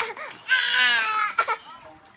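A baby's high-pitched squeal lasting about a second, wavering in pitch, with short shorter vocal sounds just before and after it.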